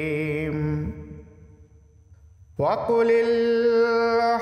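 Chanted vocal music: a long held note with vibrato fades out about a second in. After a short lull a new phrase slides up into another steady held note.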